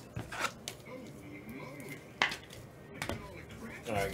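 Trading cards and plastic card holders being handled on a table: a few sharp clicks and taps, the loudest about two seconds in.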